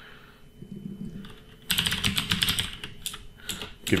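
Computer keyboard typing: a quick, steady run of keystrokes starting a little under two seconds in.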